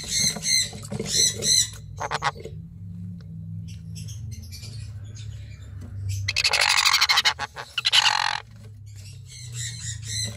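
Sun conures squawking: a few short, pulsed calls in the first couple of seconds, then a long, harsh, buzzy squawk from about six to eight and a half seconds in. A faint steady low hum runs underneath.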